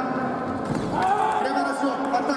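Sabre fencers' feet thumping on the piste in a quick attack, then voices shouting as the touch is scored.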